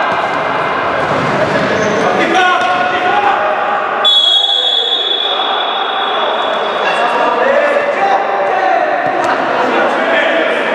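Players' voices and thuds of a futsal ball on the sports-hall floor. About four seconds in, a referee's whistle sounds one long steady blast, stopping play.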